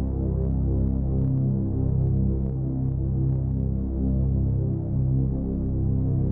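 Low, throbbing drone of a dramatic background score: a stack of deep held tones that pulse and swell.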